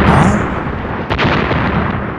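Explosion-like comic sound effect: a loud, noisy rumble that slowly fades, with a sharp crack about a second in.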